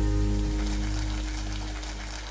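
The last chord of a country song on acoustic guitar ringing out and fading away steadily.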